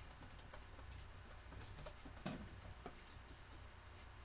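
Faint scattered taps and small clicks from watercolor paper and a brush being handled on a desk, with one slightly louder knock a little past the middle, over a low steady hum.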